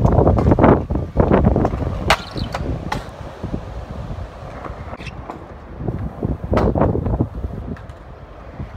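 Stunt scooter rolling over skate park concrete, with wind buffeting the microphone as a low rumble that is heaviest in the first second and again briefly later on. A couple of sharp clacks come about two and three seconds in.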